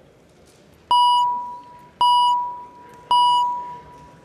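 Chamber voting chime sounding three times about a second apart, each tone starting sharply and fading out: the signal that the roll-call vote is open.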